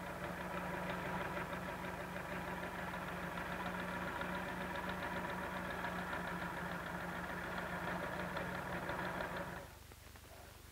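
Sewing machine running at a steady speed, stay stitching a seam in cotton fabric, with a steady hum and a rapid even ticking of the needle. It stops shortly before the end.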